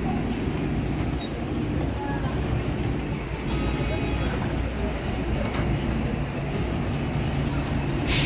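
Hyundai New Super Aerocity low-floor city bus idling at the kerb, a steady low engine hum, with a brief high-pitched tone about three and a half seconds in.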